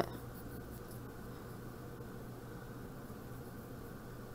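Faint scratching of a pencil drawing light lines on paper, over a steady low hum.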